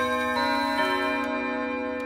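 Electronic chime with notes sounding one after another, each left ringing so they build into a held chord. It is the signal that opens an English listening test.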